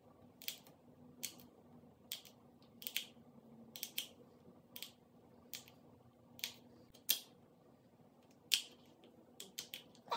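Small metal eyeshadow pans clicking as they are lifted from a tin and snapped into place in a palette: about fifteen short, sharp clicks at an uneven pace.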